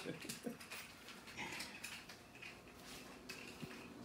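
A dog whining faintly, in a few short high whimpers.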